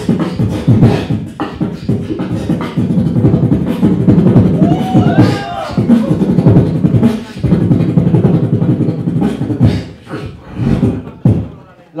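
Solo beatboxing into a handheld microphone: a fast, dense beat of deep bass hits and sharp clicks and snares. About five seconds in comes a pitched vocal sweep that rises and falls, and the hits grow sparser near the end.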